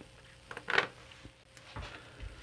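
Quiet room tone broken by light handling noise: a few small clicks and one short rustle about three-quarters of a second in, as small plastic-based LED bulbs are handled on a wooden bench.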